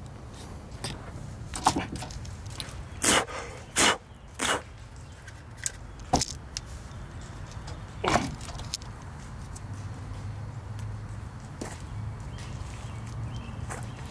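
Irregular footsteps and knocks as a person moves over a concrete walkway and steps littered with broken plastic stadium seats and debris, with a low steady rumble underneath.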